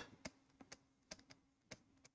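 Faint, sparse clicks of a stylus tapping on a tablet screen while handwriting, about five light taps spread across the two seconds.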